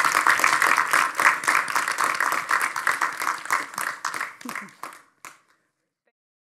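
Audience applauding, the clapping thinning out and then cutting off abruptly a little over five seconds in.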